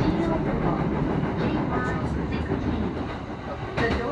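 Running noise inside a moving JR commuter train car: a steady low rumble with wheel-on-rail clatter.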